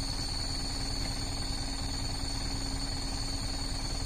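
Truck engine idling steadily, a low rumble that does not change, with a steady high-pitched tone running above it.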